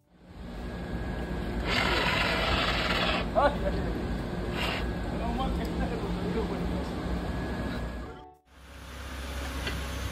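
Handheld fire extinguisher discharging into a burning car engine bay: a loud hiss starting about two seconds in and lasting about a second and a half, over a low steady rumble with brief voices. After a cut near the end, a car engine runs at a low steady rumble.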